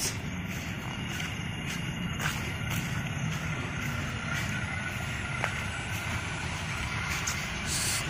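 Steady outdoor background rumble with a constant low hum.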